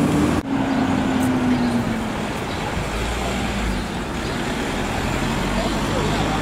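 Street traffic: a car driving past close by, its engine tone sinking slightly as it moves off, over steady road noise.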